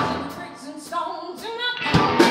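Live rock band playing, with a woman singing over electric guitar, keyboards and drums. A loud hit at the start dies away, leaving a quieter sung line over held notes, and the fuller band sound comes back in at the end.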